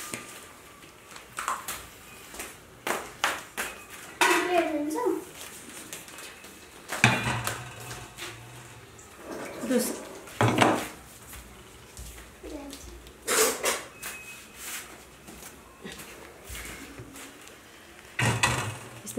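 A knife and utensils knocking and clinking on a cutting board as grilled chicken is cut up, irregular sharp clicks and knocks throughout, with short bits of talk in between.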